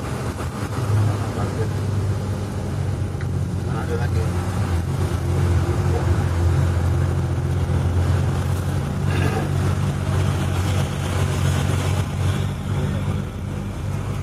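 Truck engine running steadily, heard from inside the cab as a continuous low drone.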